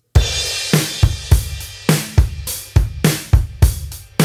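A drum kit track played back with Klanghelm MJUCjr parallel compression blended in: a cymbal crash near the start, then a steady beat of kick and snare hits with cymbals.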